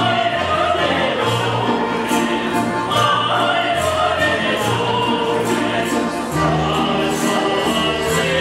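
Music with a choir singing over instrumental backing: a bass line stepping from note to note and a steady beat.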